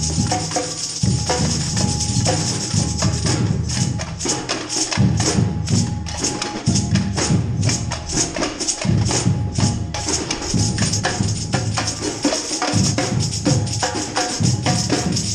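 A street percussion band playing a funk groove: rapid jingling percussion like tambourines over drums and a deep bass line.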